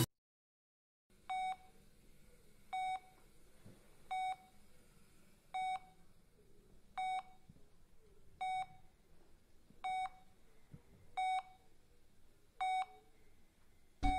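Bedside patient monitor beeping at a steady pace, one short beep about every second and a half, starting after a second of silence.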